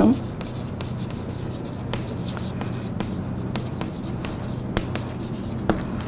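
Chalk writing on a blackboard: irregular short taps and scratches as a line of text is chalked up, over a steady low hum.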